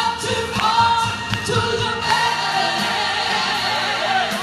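Gospel music: a woman singing into a microphone with a wavering, drawn-out vocal line, backed by accompaniment and choir-like voices.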